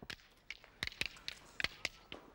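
A series of sharp cracks, about six in a little over a second, irregularly spaced.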